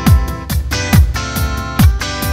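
Instrumental opening of a pop song: a deep kick drum with a falling pitch hits about once a second over sustained chords.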